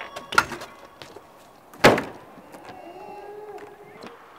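BMX bike on concrete: a knock about half a second in, then a sharp, loud clack of the bike coming down on the ground near two seconds, followed by a low rolling hiss.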